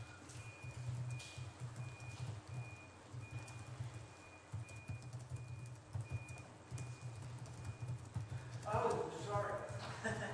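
Computer keyboard typing: a run of soft, irregular key knocks. A faint high beep repeats about twice a second through most of it, and muffled voices come in near the end.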